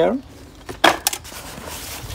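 Nylon bags and fabric rustling as gear is lifted out of a backpack, with a sharp click about a second in, a couple of lighter ticks after it, and a soft rustle near the end.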